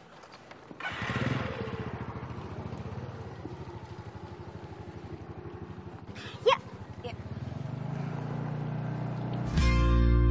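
A small motor scooter's engine starts about a second in and then runs steadily at low speed. A brief chirp sounds about six seconds in, and music fades in near the end.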